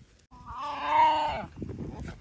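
A single drawn-out animal call of about a second, rising then falling in pitch, with a wavering tone.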